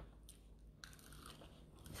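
Near silence with a few faint crunches of food being eaten.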